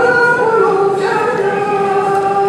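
Women's choir singing a gospel song a cappella in several-part harmony, holding long notes and moving to a new chord about a second in.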